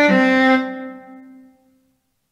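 MuseScore's sampled viola playback: the last note of a four-note phrase, a D4 tuned down 200 cents so that it sounds a whole tone lower. It starts just after the previous note, is held about half a second, then dies away.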